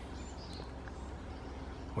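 Quiet outdoor background: a steady low hum and faint hiss, with a faint high chirp about half a second in.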